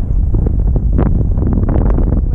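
Wind buffeting the camera's microphone: a loud, steady low rumble, with a few short rustles about a second in and near the end.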